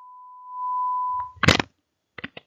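A steady electronic beep tone, louder from about half a second in, ending in a short, loud burst of noise. It is a cue tone between dialogue segments in an interpreting practice recording.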